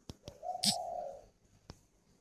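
Spotted dove cooing: one drawn-out coo note starting about half a second in, with a few faint clicks around it.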